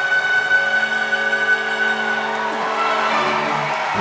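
Background music: a held, steady chord with no beat, fading slightly near the end.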